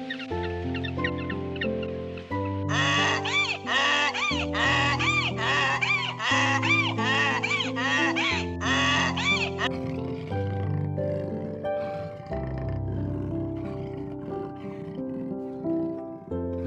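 Background music throughout, with a donkey braying over it from about three seconds in until nearly ten seconds in, in a run of repeated rising-and-falling calls.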